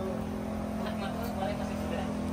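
A steady mechanical hum holding one constant pitch, with faint voices in the background.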